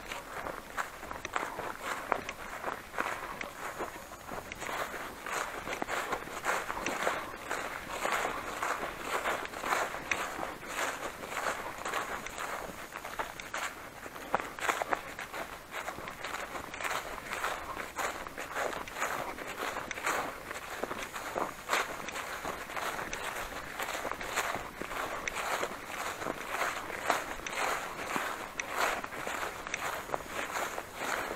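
Footsteps walking steadily through grass, about two steps a second, with a continuous rustle of vegetation and clothing.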